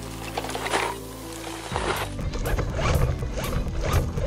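Background music with sustained chords. From nearly two seconds in, the rough rattling and scraping of a radio-controlled Volcano monster truck driving over a leaf-strewn dirt trail grows louder over it.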